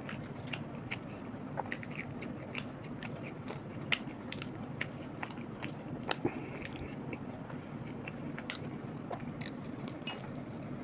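People chewing and biting into vada pav, with many short, irregular wet mouth clicks and smacks over a steady low hum.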